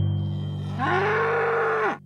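A cow mooing once: a single call about a second long that rises in pitch, holds, and is cut off abruptly. Under it runs a sustained low musical drone.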